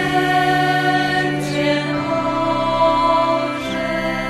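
A choir singing a slow sacred hymn in long held notes, the chord shifting every couple of seconds, with the hiss of sung consonants now and then.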